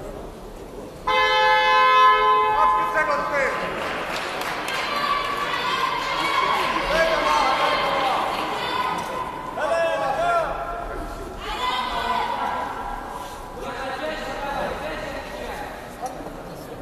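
The ring's timing signal sounds about a second in, one loud steady multi-note tone lasting about two and a half seconds, marking the end of the rest between rounds. After it, spectators' voices and shouts carry through the large hall.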